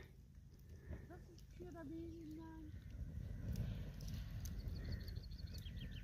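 Faint outdoor ambience under a low, even rumble: a short, low drawn-out call about two seconds in, then a small bird's quick run of high chirps in the second half.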